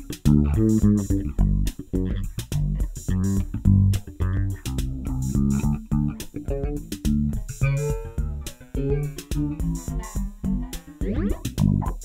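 Ibanez SR1400 electric bass with Nordstrand Big Single pickups playing a fingerstyle single-note line through an Electro-Harmonix Stereo Electric Mistress flanger/chorus pedal, heard in stereo. The rate knob is turned while it plays, and from about eight seconds in the modulation sweep rises and falls plainly through the notes.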